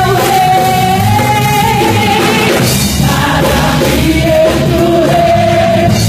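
Portuguese gospel worship song played by a church band with bass guitar, several voices singing together and holding long notes.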